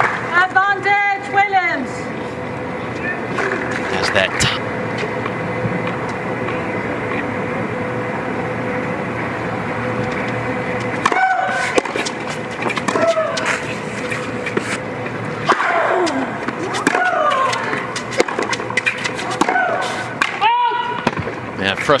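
Tennis points being played on an outdoor hard court: sharp racket-on-ball strikes with the players' grunts and cries on their shots, in two bursts of play separated by a quieter lull of steady background noise. A longer, louder cry comes near the end as a point is lost.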